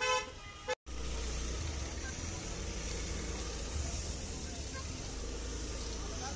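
A short vehicle horn toot right at the start. After a brief dropout, steady road-traffic noise with a low rumble follows.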